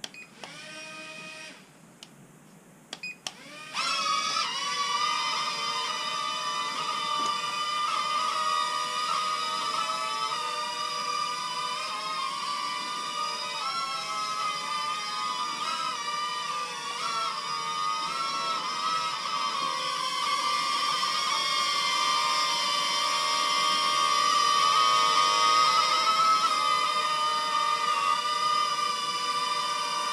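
JJRC H70 mini quadcopter's four brushed motors and propellers whining, rising sharply about four seconds in as it lifts off. The high whine then holds through the flight, its pitch wavering as the drone manoeuvres.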